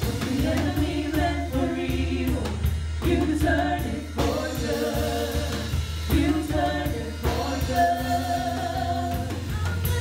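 Live gospel worship music: several women singing together in sung phrases into microphones, backed by a keyboard, a guitar and a drum kit with a steady bass line.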